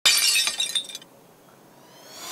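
Glass-shattering sound effect: a sudden crash followed by tinkling shards for about a second, then it stops.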